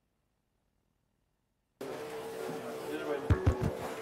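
A microphone feed switching on abruptly about two seconds in: room noise with a steady hum tone, then several heavy low thumps of the microphone being handled near the end.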